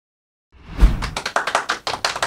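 Dead silence for about half a second, then a thump and hand clapping, several claps a second, that runs on.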